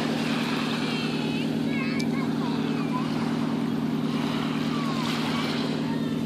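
A steady, unchanging low engine drone over a hiss of surf and wind, with a few faint short high chirps.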